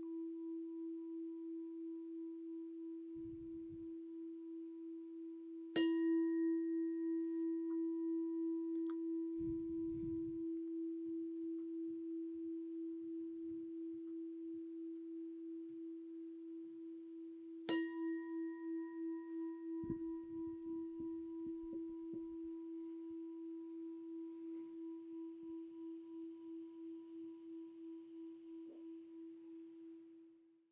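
A meditation bell already ringing, struck again about six seconds in and once more near eighteen seconds. Each strike rings on in one long, slowly fading tone with a gentle waver, marking the end of the meditation. A few faint low bumps of handling come between the strikes.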